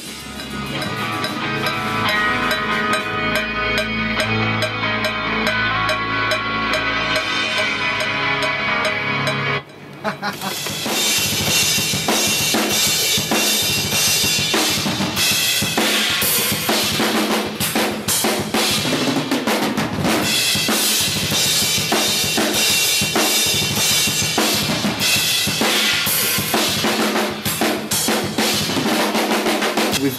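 Studio drum kit played in a heavy metal style: a 24-inch Gretsch kick, a Pearl Reference snare and Sabian cymbals. For about the first ten seconds the drums sit under sustained, droning pitched tones. Then, after a brief break, comes a dense run of fast kick, snare and cymbal hits.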